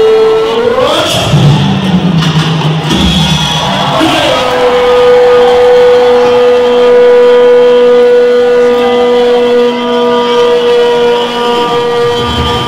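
A man's long drawn-out shout held at one steady pitch through loudspeakers, the kind of stretched-out command given in the Wagah border parade. A brief rising cry and lower voice sounds come first, then the held note sets in about four seconds in and runs on for some eight seconds.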